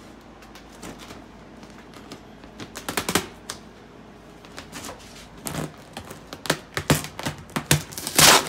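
Vinyl car-wrap film crinkling and snapping as it is handled and squeegeed onto a car hood: a run of sharp clicks, a cluster about three seconds in and denser clicking through the second half.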